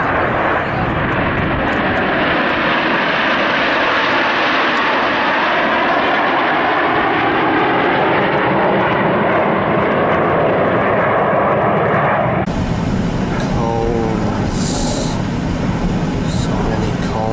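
Jet engines of a formation of Canadair CT-114 Tutor jets flying past overhead, a steady rush that swells and then eases over about twelve seconds. The sound then cuts off abruptly and is replaced by a low rumble with brief voices.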